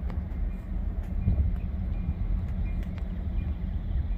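Distant freight diesel locomotives approaching slowly, a steady low rumble.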